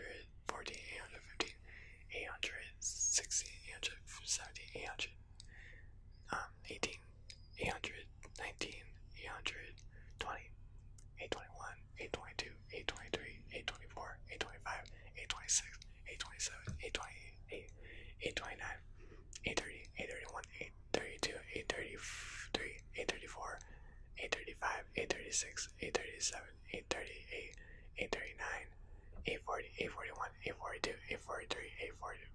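A man whispering numbers one after another, counting aloud through the eight hundreds.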